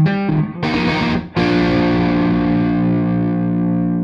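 Distorted electric guitar: a few quick picked notes, a brief noisy strum, then a chord struck about a second and a half in and left to ring out, fading slowly.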